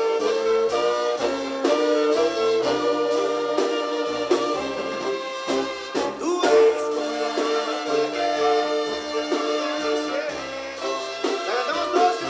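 Live banda sinaloense music: a brass section of trumpets and trombones plays held chords over a sousaphone bass line that moves in short, repeated notes.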